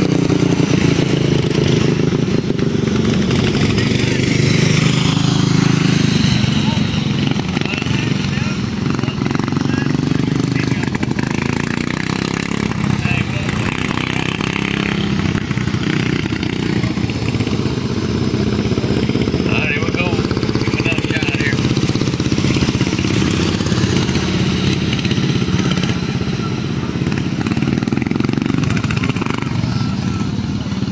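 Several modified-flathead dirt-track karts running on the track, their small engines droning continuously. The pitch shifts as the karts lap.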